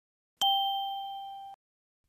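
A single bright ding, like a struck chime or small bell: a sound effect. It sounds about half a second in, rings and fades for about a second, then cuts off suddenly.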